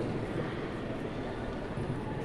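Faint, steady background noise of a large indoor hall, with no distinct event.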